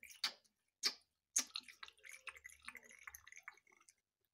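Juice draining from a toy feeding bottle into a baby doll's mouth. A few sharp clicks come first, then a run of small irregular drips and bubbling.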